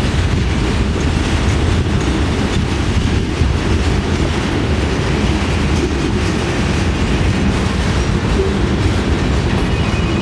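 Freight train cars, hoppers and intermodal container cars, rolling past at close range: steady noise of steel wheels running on the rails.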